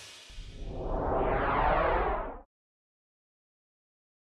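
A musical whoosh transition effect with ringing, chiming tones swells and rises for about two seconds, then cuts off suddenly halfway through.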